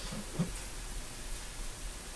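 Quiet room tone: a steady hiss with a low hum underneath, and one brief soft knock about half a second in.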